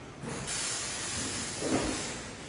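A steady hiss that starts abruptly about half a second in and eases off near the end, with a low thump just before it fades.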